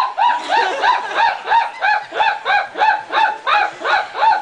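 A person's high-pitched laugh, an unbroken run of short calls about three and a half a second, each rising and falling in pitch.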